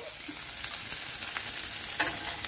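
Sliced onions sizzling in hot oil in a pan, with a metal spoon stirring them and giving a few faint scrapes.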